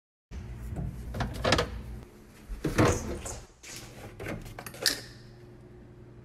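Knocks and clatter of a plastic bowl and milk jug being handled on a kitchen counter: about five sharp knocks in the first five seconds, over a low steady hum.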